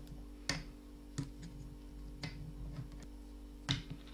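A few sharp clicks from a metal crochet hook and a plastic stitch marker being handled on the knitted work, over a faint steady low hum.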